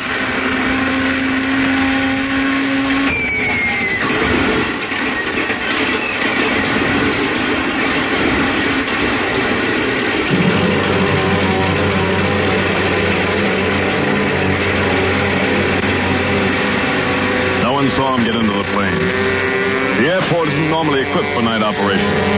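Radio-drama sound effect of a light high-wing monoplane's engine starting and warming up, settling into a steady low drone from about ten seconds in, heard on a narrow-band 1940s broadcast recording.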